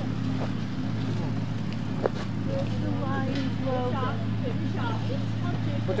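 Faint voices of people talking, over a steady low hum. A single sharp click comes about two seconds in.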